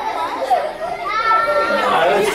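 Young children's voices calling out and chattering, with one child's long high-pitched call about a second in.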